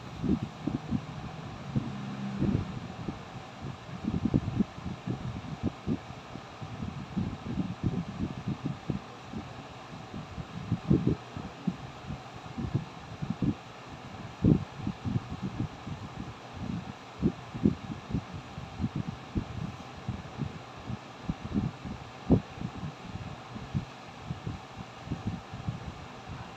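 Soft, irregular low thumps and rubbing, the handling noise of a phone microphone held against the body, over a steady faint hiss.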